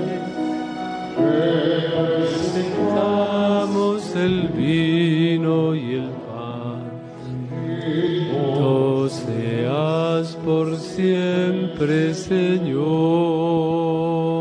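Church hymn sung during Mass, most fitting the offertory: a singing voice with strong vibrato over long held keyboard chords.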